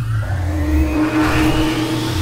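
Studio-logo sound effect: a deep rumble under a whoosh that climbs steadily in pitch.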